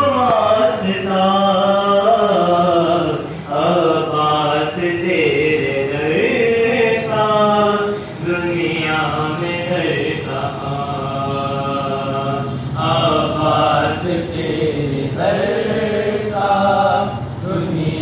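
A young man's solo voice chanting an Urdu devotional poem, a manqabat, into a microphone, in long held melodic phrases with short breaks for breath.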